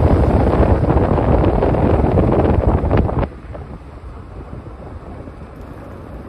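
Strong wind buffeting the microphone, a loud gusty rumble that drops abruptly a little past three seconds in to a much softer rush of wind.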